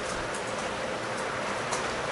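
Steady hiss of room noise with a faint steady hum, and a couple of faint ticks.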